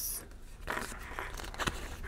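Faint rustling and scraping of paper sticker sheets being handled and shuffled by hand.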